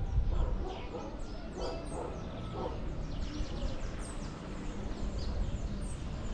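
Wind rumbling on the microphone of a camera riding an open chairlift, with many short, high, falling bird chirps throughout.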